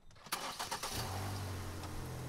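Hyundai car engine started: a short burst of starter cranking, then it catches about a second in and settles into a steady idle.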